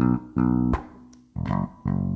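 Five-string electric bass played with the fingers: short runs of plucked, rhythmic notes with a brief pause about a second in.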